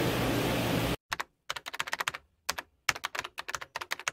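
Keyboard typing sound effect: a fast, uneven run of sharp keystroke clicks in small clusters over dead silence, starting about a second in. Before it, steady room noise runs and then cuts off abruptly.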